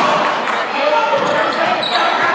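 Basketball dribbled on a hardwood gym floor, with voices of players and spectators in a large gym.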